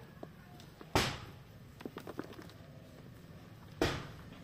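Hands mixing a dry potting mix of black soil and rice hulls in a plastic tub: light rustling and scraping with small clicks, and two louder swishes, about a second in and just before the end.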